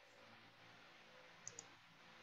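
Near silence: room tone, with two faint quick clicks about a second and a half in.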